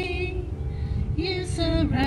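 A small group of singers, women's voices most prominent, singing a hymn in long held notes with vibrato, the notes pausing briefly a little after halfway, over a low rumble.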